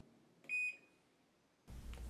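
A single short, high electronic beep from a Whirlpool Cabrio dryer's control panel as a button is pressed.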